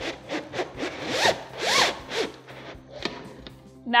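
A fabric banner graphic being drawn back into the spring-loaded base of an Optimum retractor banner stand, sliding over the table and under a guiding hand: a run of irregular, zipper-like rubbing swishes, loudest in the middle and thinning out near the end.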